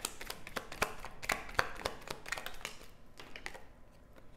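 A deck of tarot cards being shuffled by hand: a run of quick, irregular light clicks and flicks as the cards slide and tap against each other, thinning out toward the end.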